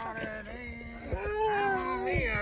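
A man's voice holding a long, drawn-out, sing-song cry from about halfway through, quieter than his shout just before. It is an excited call over a freshly landed bass.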